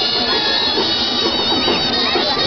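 Live festival street music for the dancing giants, led by reedy wind instruments holding high notes.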